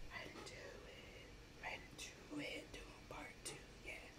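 Faint whispering, in short soft breathy bits, over an otherwise quiet room.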